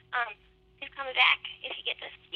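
A person's voice heard through a telephone line, thin and narrow-sounding, speaking in short phrases over a faint steady hum.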